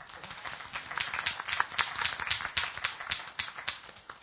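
Small audience applauding, the separate hand claps easy to pick out; it starts at once and dies away near the end.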